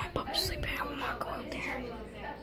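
Soft whispered speech, too quiet for the words to be made out.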